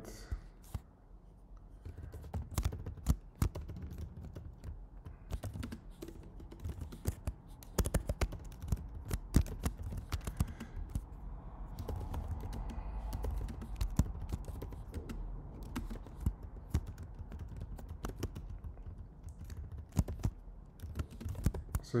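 Computer keyboard typing: irregular runs of keystrokes with short pauses between them, as code is entered.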